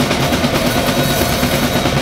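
Live extreme-metal band playing loud, the drum kit hammering out a dense, unbroken run of very fast strokes over sustained guitar and bass tones.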